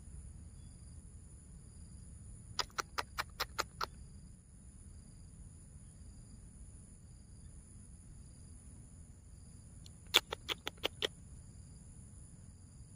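Steady high-pitched insect chirring, with two quick runs of about six sharp ticks, one about three seconds in and another about ten seconds in.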